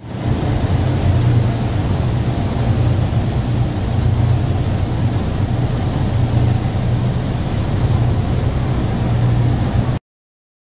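Steady low drone of a ferry's engines under the rush of churning wake water and wind, starting and cutting off abruptly.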